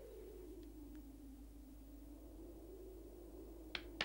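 Very quiet soundtrack: a faint steady low hum, with one short click near the end.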